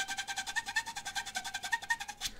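The show's theme tune playing quietly: a held tone with a couple of small pitch steps over a fast, even pulse.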